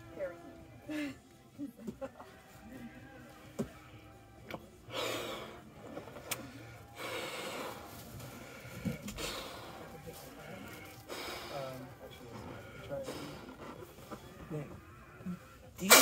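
A red latex balloon being blown up by mouth: about four long, forceful breaths pushed into it, the first about five seconds in, with short pauses between them.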